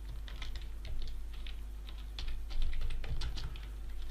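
Typing on a computer keyboard: a run of quick, irregular keystroke clicks.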